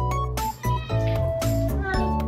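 Background music, with a cat meowing over it.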